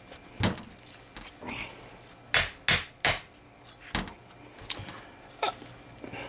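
Sharp metal taps and knocks, about seven and irregularly spaced, from working a corroded outboard carburetor apart with vise-grip pliers. White-powder corrosion is holding the float bowl cover stuck.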